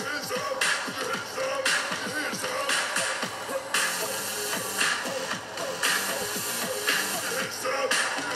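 Live pop concert music playing back, with a steady beat of about one accented hit a second.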